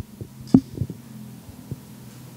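Handling noise from a handheld microphone: a few dull thumps and knocks as it is moved and set down on the cloth-covered altar, the loudest about half a second in. A low steady hum runs underneath.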